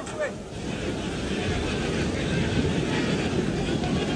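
Football stadium crowd noise, a steady din of many voices.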